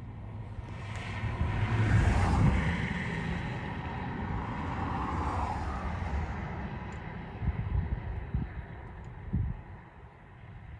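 A road vehicle passing close by: its noise swells to a peak about two seconds in and fades away by about seven seconds, over a steady low rumble. A few dull thumps follow near the end.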